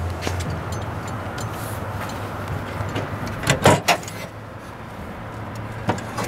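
Lid of a diamond-plate metal trailer tongue box being unlatched and opened, with a short cluster of sharp knocks about three and a half seconds in, over a steady rushing background noise.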